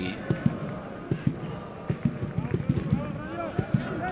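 Pitch-side sound of a football match: players shouting calls to each other over a run of short sharp thuds, typical of the ball being kicked and passed.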